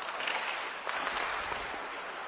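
Ice hockey play on the rink: skate blades scraping the ice in a steady hiss, with a few light stick-and-puck taps near the start and about a second in.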